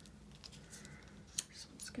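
Faint rustling and light taps of cut paper pieces being slid and set down on a journal page over a cutting mat, with one sharper click about a second and a half in.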